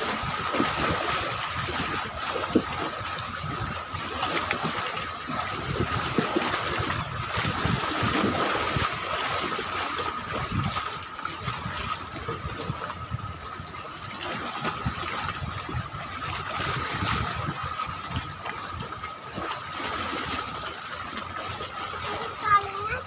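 Seawater lapping and sloshing against a concrete seawall, with a thin steady high whine running underneath.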